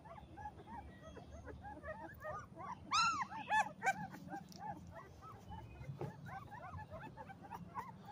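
A litter of two-week-old pit bull puppies whimpering and squeaking: many short, overlapping little cries, with a couple of louder squeals about three seconds in.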